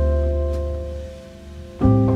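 Soft jazz background music: a piano chord rings and slowly fades, and a new chord is struck near the end.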